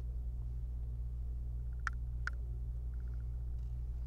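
A small magnetic Phillips screwdriver working the tiny mounting screws of a laptop LCD panel: two sharp clicks about half a second apart near the middle, with faint quick ticking before them and again later. A steady low hum runs underneath.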